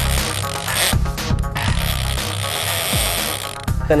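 Big-game fishing reel's drag ratcheting as a large white sturgeon runs and pulls line off the reel, over background music with a steady low beat.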